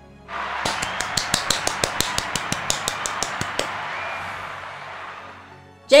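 Crowd applause, with sharp individual claps standing out over the first few seconds, dying away about five seconds in.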